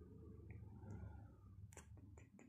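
Near silence: a faint steady low hum, with one short sharp click near the end.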